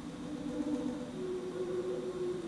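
Alto saxophone playing softly: one low note held for about a second, then a step up to a higher note that is held on.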